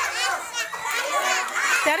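A crowd of young children's voices, chattering and calling out over one another.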